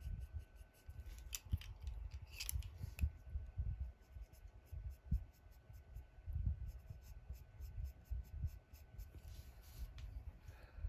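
Coloured pencils shading on cardstock: quick, repeated scratchy strokes with soft rubbing of the hand on the paper. There are a few sharper clicks about one to three seconds in.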